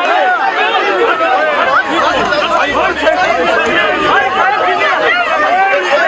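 Many people talking and calling out over one another at once, a dense, loud babble of voices.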